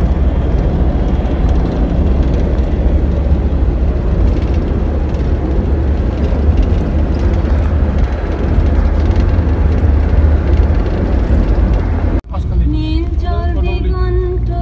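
Wind and road noise inside a moving vehicle, a loud steady rush with a heavy low rumble of wind buffeting the microphone. It cuts off abruptly about twelve seconds in, and music with sustained notes takes over.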